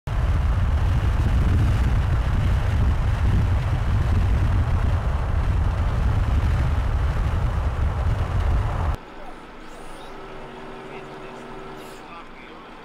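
Loud, steady rumble of a vehicle on the move, road and engine noise heard from inside the vehicle. It cuts off suddenly about nine seconds in, leaving much quieter outdoor sound.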